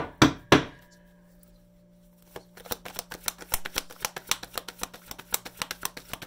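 A few sharp knocks in the first second, then after a short pause a tarot deck being shuffled by hand: a fast, uneven run of card clicks and slaps from about two and a half seconds in.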